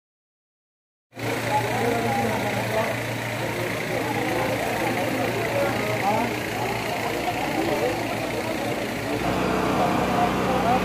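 Silent for about the first second, then a steady engine hum under many people's voices mingling in the crowd. About nine seconds in, the engine note steps up to a higher pitch.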